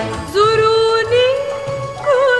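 A song: a singing voice enters about a third of a second in on one long held note, which slides up a little about a second in, over a soft low accompaniment.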